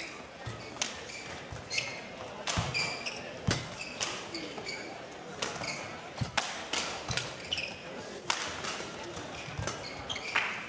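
Badminton rally: sharp cracks of racket strings hitting the shuttlecock about once a second, with short squeaks of court shoes on the floor between the shots.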